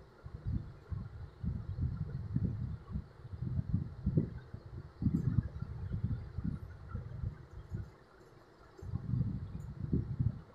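Low, irregular rumbling with soft bumps and no speech, pausing briefly about eight seconds in.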